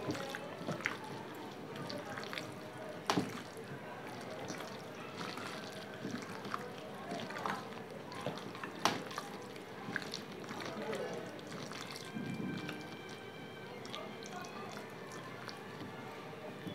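A hand kneading raw chicken pieces in a thick, wet masala marinade in a bowl, making irregular soft squelches and small sharp clicks as the fingers work the pieces.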